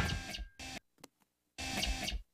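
Cartoon sound effects for a toy robot being programmed: a sharp hit that rings and fades, a short bleep and a click, then a brief buzzing tone near the end.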